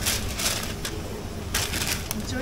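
Sheets of white wrapping paper rustling and crinkling as they are handled, in short bursts near the start and again near the end, over a steady low hum.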